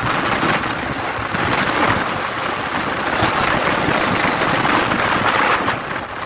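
Steady rushing wind and road noise heard from on board a moving vehicle.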